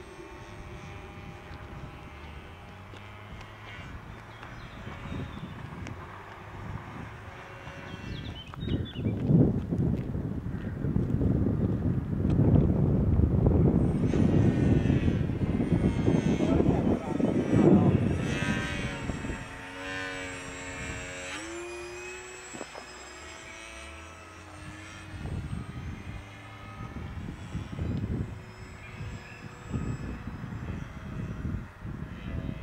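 Electric motor and rear pusher propeller of a small RC flying-wing model running in flight, a steady whine that shifts in pitch with the throttle and rises about twenty seconds in. A loud rough rumble covers it from about eight to eighteen seconds in.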